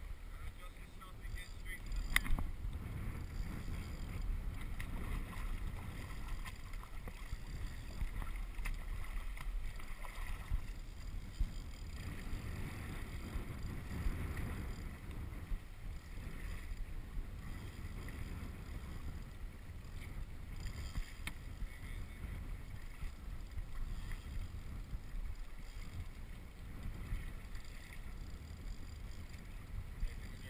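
Water sloshing and splashing around a sit-on-top kayak on the open ocean, with paddle strokes, wind rumbling on the camera's microphone throughout, and a sharp knock about two seconds in.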